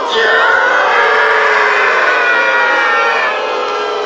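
SpongeBob's cartoon singing voice holding long, wavering notes over the band, thin-sounding with the low end cut away.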